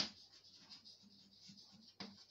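Chalk writing on a blackboard: faint, irregular scratching and tapping strokes as letters are written, after a sharp click right at the start.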